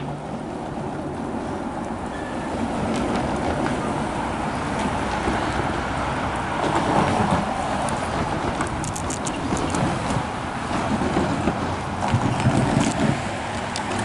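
Empty freight hopper cars rolling along the track, a steady rumble of wheels on rail, with a run of short, sharp clicks about nine seconds in.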